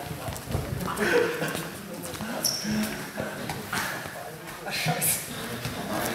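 Indistinct chatter and laughter from a group of men, with a few knocks of footsteps on a hard floor.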